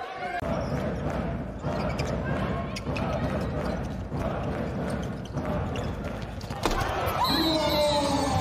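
A handball bouncing on an indoor court floor, its knocks recurring about every second and a bit, with players' voices calling out in a near-empty sports hall. A louder impact comes near the end.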